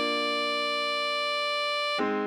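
Alto saxophone tutorial playback holding one long written B5 over a sustained Bb major chord. The tone is steady and unchanging and cuts off at the end.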